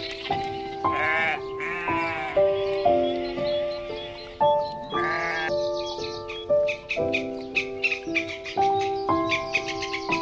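Sheep bleating three times, wavering calls about one, two and five seconds in, over background instrumental music.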